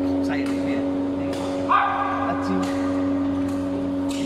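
Badminton play in a sports hall: sharp racket strikes on the shuttlecock, heard as a few scattered clicks, over a steady hum of hall machinery. A short pitched squeal just under two seconds in is the loudest sound.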